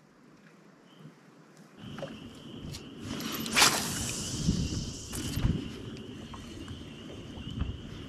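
A spinning rod being cast, a sharp swish about three and a half seconds in, then the spinning reel being cranked on the retrieve, with a thin steady whine. Low knocks and rumble of handling in an aluminium canoe run underneath.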